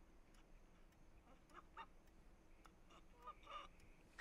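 Near silence, with a few faint brief sounds about one and a half seconds in and again near the end.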